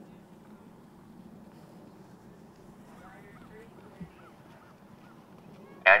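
Faint outdoor background with distant geese honking several times about three to four seconds in, and a single soft thump near four seconds. A man's voice starts commentating right at the end.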